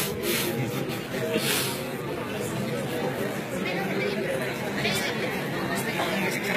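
Indistinct chatter of an audience talking among themselves in a large lecture hall, with no single voice standing out. A few short hissing noises cut through, the loudest about a second and a half in.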